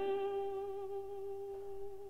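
A woman's operatic voice, unaccompanied, holding one long, steady note without vibrato that slowly fades.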